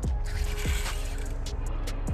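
Spinning reel's drag screaming as a heavy jack strips line against a tight drag, with a high hiss strongest in the first second.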